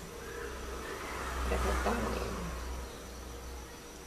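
Handling noise: a rustle with a low rumble as the fabric and the camera are moved, loudest in the middle and fading near the end.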